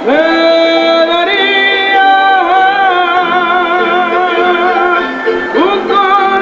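Folk song from a traditional folk group: a voice holds long notes with vibrato over instrumental accompaniment, sliding up into a new phrase at the start and again near the end.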